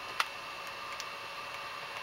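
A sharp click a fraction of a second in, then a few fainter ticks over a steady faint hiss.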